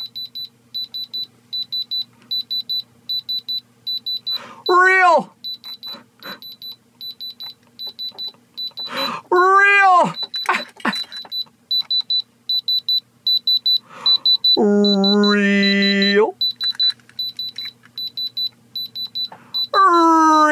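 Handheld diamond tester pen beeping in a rapid, steady run of short high beeps, about three a second, as its tip is held against the stones of a grill: the tester's signal that it reads diamond. A man's voice cuts in with two short 'ahh' calls and, later, one longer held note.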